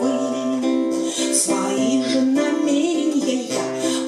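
A woman singing a song to her own strummed acoustic guitar, a simple two-chord accompaniment.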